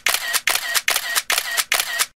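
Camera shutter firing in a rapid burst, about three shots a second, with an even series of sharp clicks.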